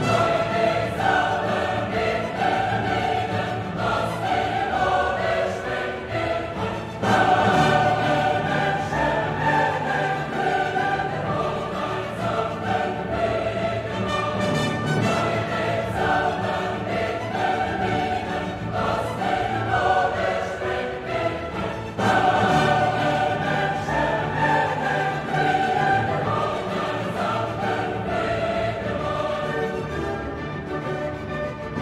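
Background music: a choir singing slow sustained lines with orchestra, swelling louder about seven seconds in and again about twenty-two seconds in.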